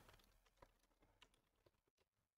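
A few very faint computer keyboard keystrokes, scattered clicks in near silence.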